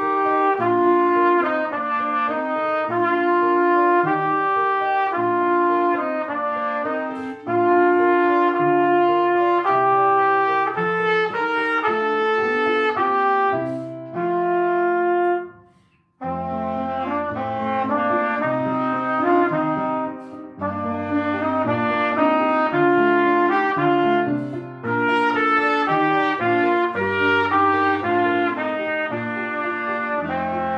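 Trumpet playing a melody in long held notes over an upright piano accompaniment. About halfway through the music stops briefly, then starts again.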